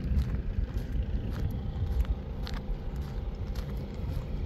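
A car running with a steady low rumble of engine and road noise.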